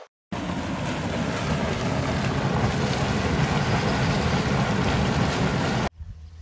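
Boiling volcanic hot spring: a loud, steady rush of churning water and steam that starts suddenly just after the start and cuts off just before the end.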